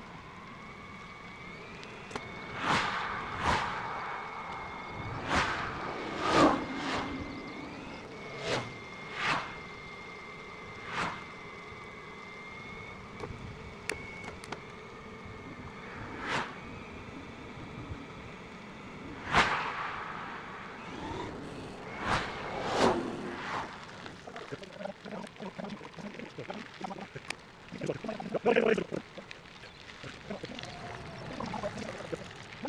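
Outdoor ride audio played back several times faster than real. A steady high whine runs through the first half, and many short, sharp swells of sound come a few seconds apart, the loudest about two-thirds of the way in.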